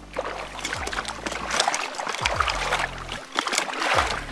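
A muskie thrashing in a landing net at the boat's side, a quick irregular run of splashes in the water, over the low steady hum of the boat's engine.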